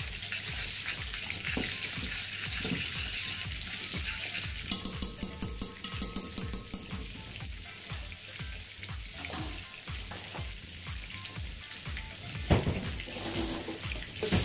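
Salmon fillets searing skin-side down in hot oil in a frying pan, sizzling steadily. A spoon stirs dill into a pot of cream sauce through the middle, and there is a sharp knock near the end.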